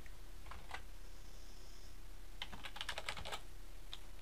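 Computer keyboard keystrokes: two taps about half a second in, then a quick run of keys about two and a half seconds in, over a faint steady hum.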